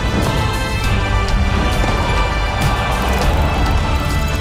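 Theme music of a sports TV channel ident: sustained chords with repeated percussion hits.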